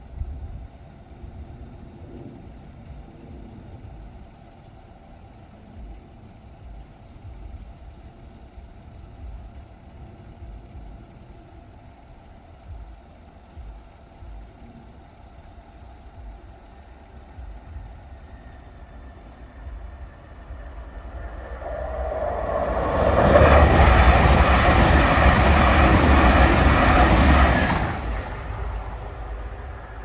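A Class 222 Meridian diesel multiple unit passing through the level crossing. Its noise builds over a few seconds, stays loud for about five seconds, then falls away sharply near the end.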